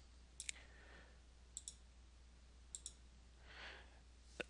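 Three faint clicks, each a quick double tick of a button pressed and released, about a second apart: a computer mouse being clicked. A soft breath near the end, over a steady low hum.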